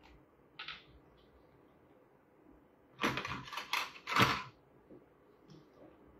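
Kitchen handling noises: a quick run of several short rasping, clattering strokes about three seconds in, in an otherwise quiet room.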